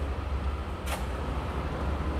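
Steady low mechanical hum, with one short click about a second in.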